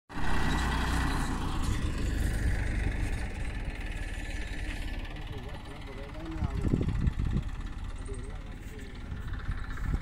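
Massey Ferguson 241 tractor's three-cylinder diesel engine running steadily for about the first five seconds, then fading, with a few thumps about seven seconds in.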